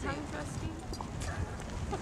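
Wind rumbling on a camcorder microphone, with faint voices in the background.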